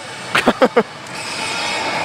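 A short laugh near the start, over the steady din of pachislot machines in a gaming hall, which swells gradually louder in the second half.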